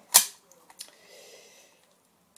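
A single sharp metallic clack from the magazine of a Sig Sauer 1911 CO2 airsoft pistol as it is handled at its release, followed by faint handling noise.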